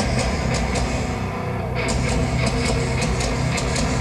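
A heavy metal band playing live at full volume: distorted guitars and bass over a drum kit, with cymbals struck several times a second, the strokes coming thicker from about halfway through.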